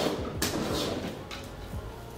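Handling noise: two short rustling scrapes about half a second apart near the start, then fainter rustles, as hands move through the hair and around the work area.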